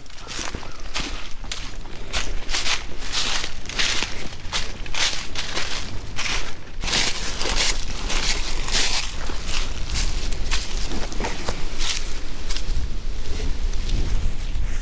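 Footsteps crunching through dry fallen leaves at a steady walking pace, about two crackling steps a second.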